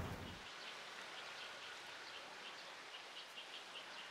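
Faint outdoor ambience: a soft, even background hiss with a thin, high chirp repeating about three times a second.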